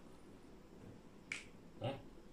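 A single short, sharp click a little past a second in, against quiet room tone.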